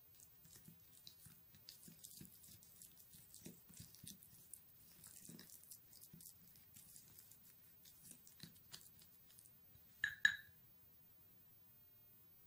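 Plastic spoon stirring a thick paste in a small glass bowl: faint, irregular scraping and squishing. About ten seconds in comes one short, ringing glass clink.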